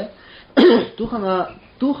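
A man sharply clears his throat, the loudest sound here about half a second in, running into voiced sound before speech resumes.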